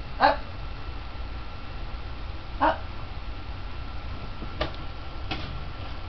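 Two short, high calls from a pet animal, about two and a half seconds apart, then two sharp clicks later on.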